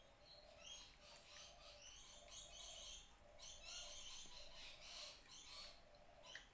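Faint birds chirping, a busy run of quick, high calls that comes and goes in clusters.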